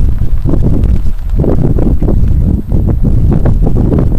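Wind buffeting the camera microphone: a loud, uneven low rumble that gusts up and down, briefly easing near the end.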